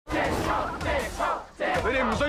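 Several people shouting at once, loud wordless yells with many voices overlapping, with a brief lull about three-quarters of the way through before the shouting picks up again.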